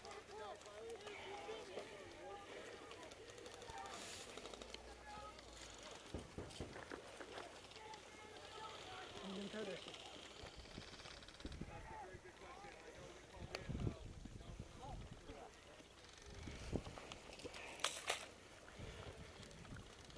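Faint, indistinct voices of people talking at a distance, over the scattered knocks and rustle of someone walking with gear.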